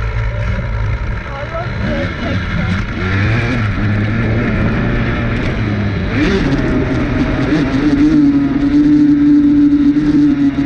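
Dirt bike engine running under load while riding through long grass. Its pitch wanders, then rises about six seconds in and holds higher to the end.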